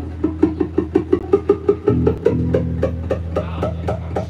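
Two guitars playing live, an acoustic guitar picking quick, evenly spaced notes, about six a second, over held low notes that swell about halfway through.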